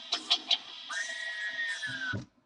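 Music from a YouTube video playing through a tablet's small built-in speaker: a few short sounds, then one long held high note that sinks slightly near the end.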